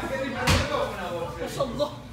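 A single sharp thump about half a second in, with a couple of faint clicks later, over restaurant chatter.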